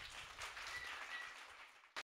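A small audience clapping, faint and thinning out toward the end, after the piano's last chord has died away. A short sharp click comes at the very end.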